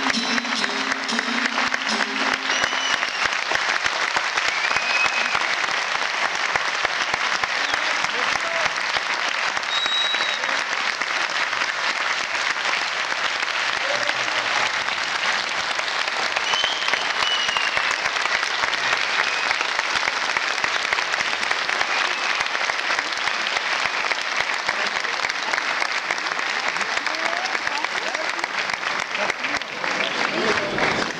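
Concert audience applauding steadily throughout, with a few short whistles, while the last notes of a bağlama die away in the first second or so.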